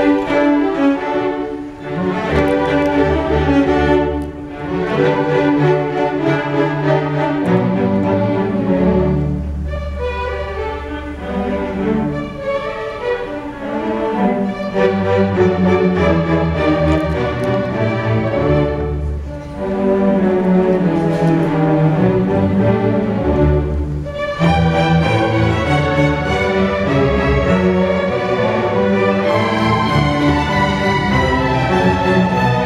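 Student orchestra's bowed strings playing: violins over cellos and double basses in long held notes, the music phrased with a few brief dips in loudness.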